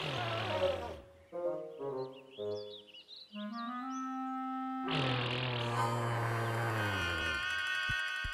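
Cartoon Parasaurolophus calls through its crest: deep, horn-like honks. A one-second honk at the start and a longer one from about five seconds in, which drops in pitch and fades near the end. Between them is a short run of stepped musical notes with high chirps.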